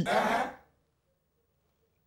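A man's brief breathy, throaty vocal sound, like a throat clearing or exhale, fading out about half a second in, then silence.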